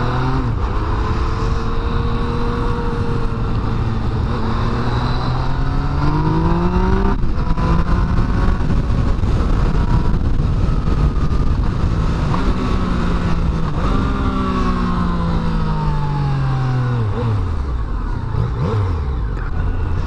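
Yamaha FZ-09's 847 cc inline three-cylinder engine on its stock exhaust, heard from the rider's seat while riding. Its pitch rises for the first seven seconds, breaks off sharply, climbs again, then falls steadily over the last several seconds as the bike slows.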